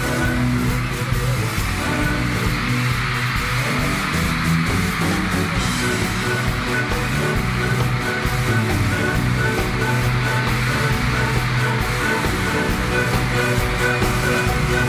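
Pop music with a steady beat, played loudly and without a break.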